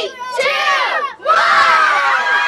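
A crowd of children shouting and cheering. A few high-pitched voices at first, then many voices join in a loud outburst a little over a second in.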